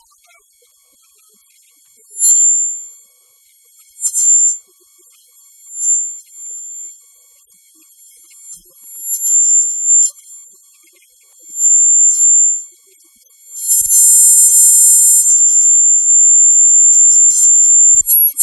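Shrill, high-pitched electronic tones in short bursts, then holding steady for the last few seconds, with no low sound beneath them.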